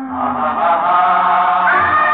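Old Hindi film song playing: a held sung note gives way to a fuller, sustained ensemble passage, with a new held note coming in near the end.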